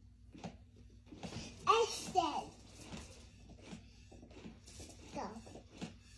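A young child's brief high-pitched vocal sounds, two bending calls about two seconds in and a fainter one near the end, over faint clicks of handling.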